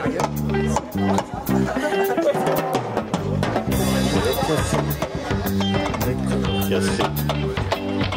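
Live band playing an instrumental passage: drum kit keeping a steady beat under a repeating bass line, with guitar.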